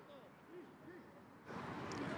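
Quiet outdoor rugby-match sound with faint distant voices, then the pitch-side ambience comes back up about one and a half seconds in.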